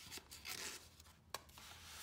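Paper and cardstock rustling and rubbing as hands handle the pages and tags of a handmade paper journal, with one light tick a little past the middle.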